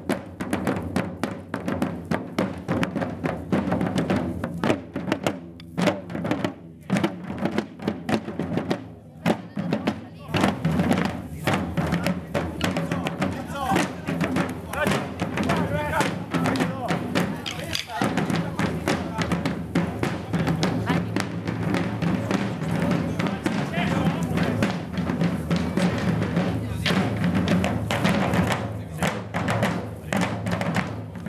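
A corps of field drums played together by marching drummers in a steady cadence of strokes. The playing thins out for a few seconds about a third of the way in, then carries on at full strength.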